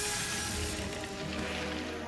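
Dramatic film score of sustained orchestral tones, with a whooshing swell at the start.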